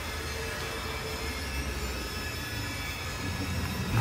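A steady low rumble with faint humming tones underneath, with no distinct knocks or changes.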